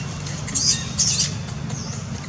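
Newborn macaque giving two short, high-pitched squeaks about half a second apart, over a steady low rumble.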